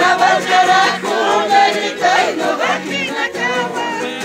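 A group singing carnival coplas in high voices, to a strummed charango.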